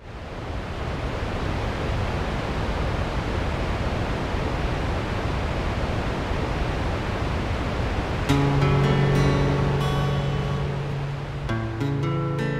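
A steady rush of water fades in and holds. About eight seconds in, music comes in over it: held chords that lead into acoustic guitar near the end.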